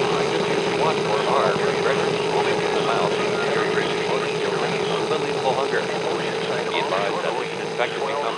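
Broadcast interference: a steady, wavering hum over hiss, with broken, garbled voice-like sounds scattered through it.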